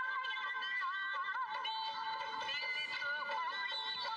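Song playing: a high singing voice carrying a wavering, ornamented melody over instrumental backing.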